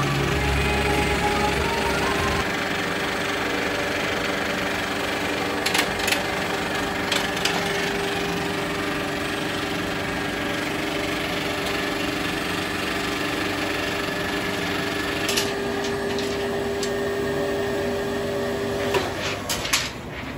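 70mm film projector running with a steady mechanical whirr and hum, with a few sharp clicks as the machine is handled. The running sound cuts off about a second before the end as the projector is shut down.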